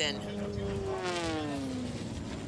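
Sport-class race plane flying past at speed, its engine and propeller note falling steadily in pitch as it goes by.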